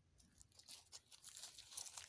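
Faint rustling and light clicks of tarot cards being slid off a spread and gathered into a deck, growing busier through the second half.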